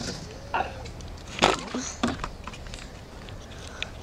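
A few light clicks and knocks over faint room noise, the loudest about a second and a half in.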